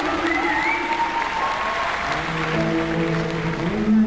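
Live band music from a pop ballad, with held pitched notes, over audience applause.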